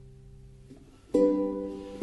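Solo Renaissance vihuela: a held chord dies away, then a new chord is plucked a little over a second in and rings on.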